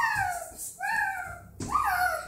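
A toddler squealing in play: three short, high-pitched squeals in quick succession, each falling in pitch.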